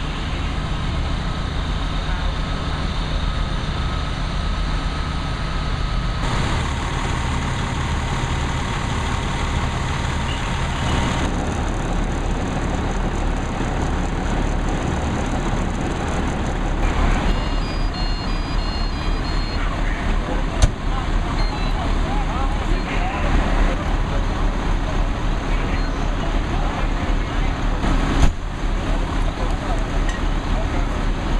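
Fire engine's diesel running steadily at a fire scene, a low drone, with people talking. A few short high electronic beeps come a little past halfway.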